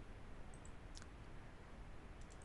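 A few faint clicks of a computer keyboard and mouse over quiet room tone: two small ticks about half a second in, then a sharper click about a second in.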